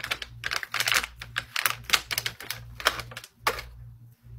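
Rapid, irregular tapping clicks, like typing, which stop about three and a half seconds in.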